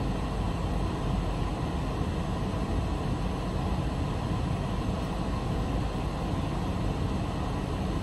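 Steady rushing hum inside a parked car's cabin, from the car's idling engine and ventilation fan.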